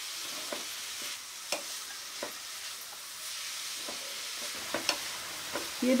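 Grated carrot and beetroot sizzling in hot ghee in a pan, a steady hiss as their moisture cooks off. About seven short scrapes and taps of the spatula against the pan come as it is stirred continuously over medium heat.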